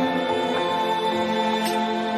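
Background music: a held chord of several sustained notes, without a beat.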